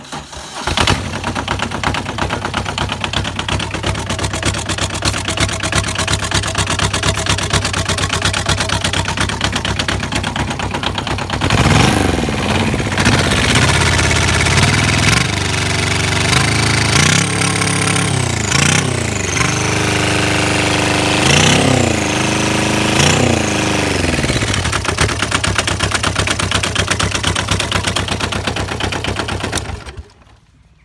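Kubota Z482 twin-cylinder turbo-diesel in a converted Honda Superdream motorcycle starting almost at once after preheat and idling with a knocking diesel clatter. Between about 12 and 24 seconds it is revved in a series of short blips, with a high turbocharger whine rising and falling with the revs. It is then shut off on the key at the end.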